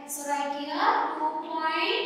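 A voice speaking in drawn-out, sing-song tones, with sharp hissing consonants.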